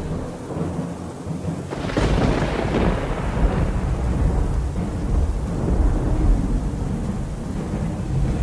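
Thunderstorm: rain hissing, then about two seconds in a loud thunderclap breaks and rolls on in a long low rumble.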